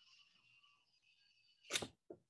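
Faint hiss, then one short, sharp breath into the microphone near the end.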